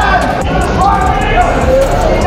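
Ringside voices and crowd shouting during a boxing exchange, with dull thuds of gloved punches landing.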